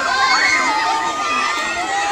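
A large crowd of children shouting and calling out all at once, many high-pitched voices overlapping.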